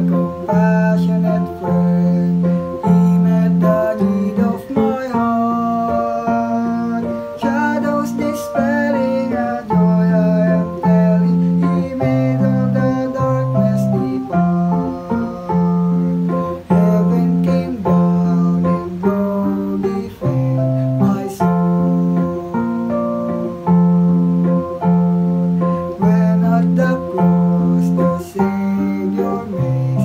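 A solo male voice sings a hymn verse over a steady instrumental accompaniment with a regular bass beat, with an instrumental stretch between the verse and the chorus.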